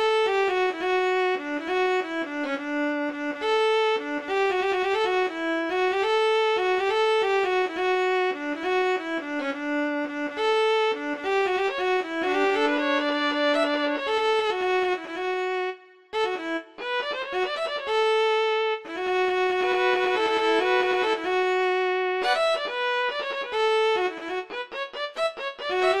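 A solo bowed string instrument, violin-like, playing a single-line melody of held and moving notes, with a brief pause about two-thirds of the way through and quicker notes near the end.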